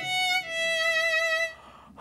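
A violin playing a short phrase: one note, a brief break, then a second note held for about a second with vibrato, stopping about a second and a half in.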